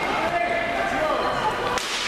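Floor hockey in a large, echoing gym: sticks and the ball clattering on the hard floor around the net, with faint shouts from players, and one sharp crack near the end as a shot is taken.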